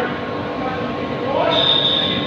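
Steady machinery hum, with a high-pitched whine that starts about one and a half seconds in.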